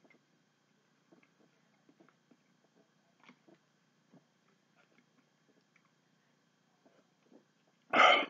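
Faint mouth sounds of a man chewing pieces of cotton cloth: scattered small soft clicks and smacks. A sudden loud cough-like burst of breath breaks in at the very end.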